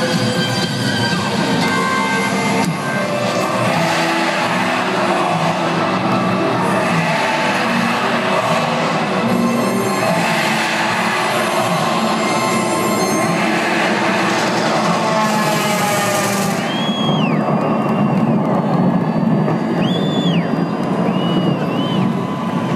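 Live rock concert music over a stadium sound system, heard loud from within the crowd. From about sixteen seconds in it gives way to a steady roar with shrill whistles rising and falling several times, as from a cheering crowd.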